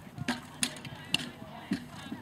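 Horse's hooves striking the arena footing at a canter: four sharp thuds about half a second apart as it lands over a fence and canters on.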